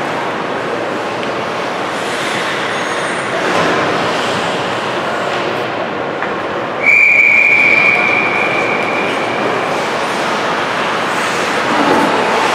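Steady rink noise of skates scraping on ice, then about seven seconds in one long, shrill referee's whistle blast that tapers off over a couple of seconds.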